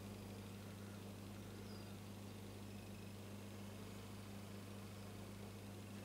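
Quiet room tone: a faint steady low hum with a little hiss.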